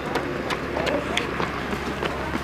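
Footfalls of people running on a concrete walkway, a few sharp steps spaced out, with distant voices behind them.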